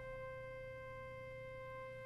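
Pipe organ holding a single steady note: middle C played on a four-foot stop, so it sounds the C an octave above middle C.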